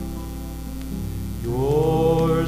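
Folk worship song from a vinyl record: a held chord sustains between sung lines, and about one and a half seconds in a voice slides up into the next line.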